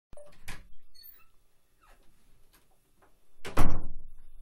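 Wooden interior door being opened and shut: a latch click near the start, a few fainter knocks, then the door closing with a loud thump about three and a half seconds in.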